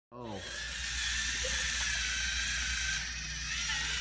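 Small electric motors of Lego Mindstorms sumo robots whirring steadily as two robots push against each other, with a short voice sound at the very start.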